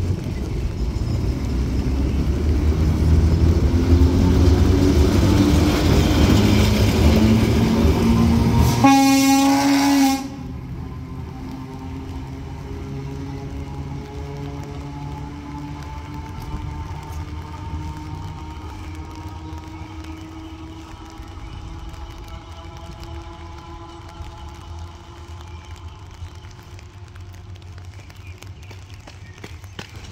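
Vintage Stern & Hafferl electric railcar pulling out and passing close, its running noise on the rails building for the first ten seconds. A short horn blast sounds about nine seconds in, then the sound drops and fades as the railcar draws away, leaving a faint rising motor whine.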